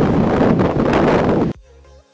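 Strong wind buffeting the microphone over breaking surf. It cuts off suddenly about one and a half seconds in, and quieter music with a steady beat follows.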